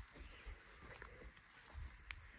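Faint footsteps on dry grass, a few soft low thuds among near silence.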